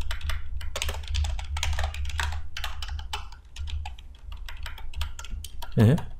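Typing on a computer keyboard: a quick run of key clicks, with a short pause about four seconds in.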